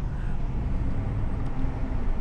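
Car interior road and engine noise while driving: a steady low rumble.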